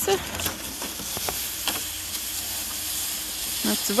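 Plastic pulk sled dragged over thin snow, a steady hissing scrape, with a few light crunches under the man's steps.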